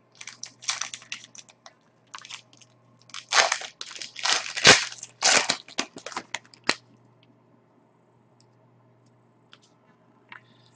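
Hockey card pack wrapper crinkling and tearing as it is opened by hand: a string of irregular crackles that stops about seven seconds in.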